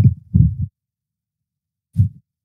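A man's low voice trailing off in a couple of muttered syllables, then cutting to dead silence after well under a second; a short low syllable begins right at the end.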